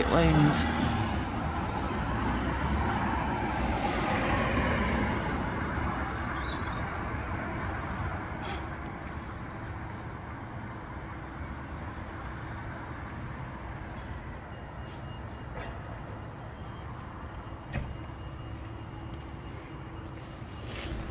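Road traffic: a vehicle passes, loudest in the first few seconds and slowly fading away, over a steady low hum.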